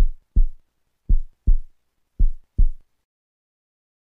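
Heartbeat sound effect: three lub-dub double thumps about a second apart, stopping about three seconds in.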